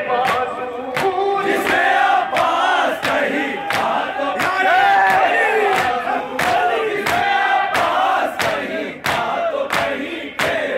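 A crowd of men chanting a noha together, with a steady rhythm of sharp hand strikes, the unison chest-beating of matam, cutting through the voices.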